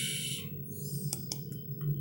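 A short hiss, then a few light clicks and taps of a phone being handled, over a steady low hum.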